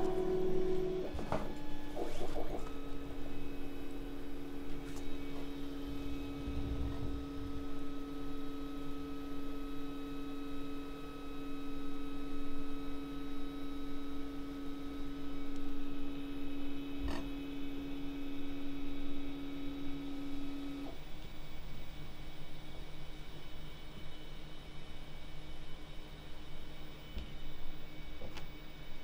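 Panospace 3D printer running with a steady mechanical whine as it starts a print job and heats up. The whine sets in about two seconds in and cuts off suddenly about three quarters of the way through.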